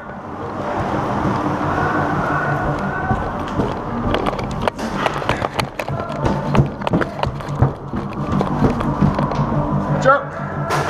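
Music playing over a busy clatter of sharp clicks and knocks, which come thick and fast from about four seconds in.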